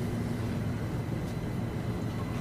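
Steady low rumble of background ambience under a film scene, with a faint steady hum and no speech.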